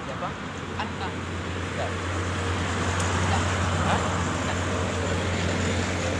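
Low steady rumble of road traffic that builds from about a second in, under snatches of boys talking.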